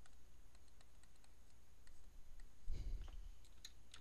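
Faint scattered clicks and taps of a stylus writing on a tablet screen, with a soft low thud about three seconds in.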